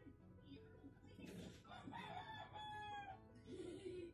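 A rooster crows once about a second in, one long call that rises and then holds a drawn-out note, heard faintly over quiet background music.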